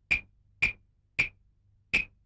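Four sharp, short taps about half a second apart, a little uneven in spacing, over a faint low hum.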